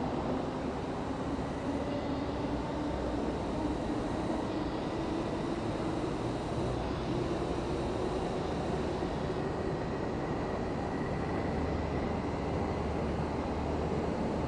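Steady background rumble with a faint low hum that rises slowly in pitch over the first few seconds and then holds, and faint thin high tones above it.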